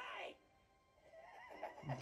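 A young man's shouted line from the anime's soundtrack ends in a strained cry that falls in pitch in the first moment. A quiet lull with faint sound follows, then another voice begins just at the end.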